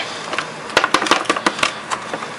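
Dry freeze-dried granola with blueberries pouring out of a foil-lined pouch into a plastic bowl, as an irregular scatter of small clicks and rustles from the pieces and the crinkling pouch.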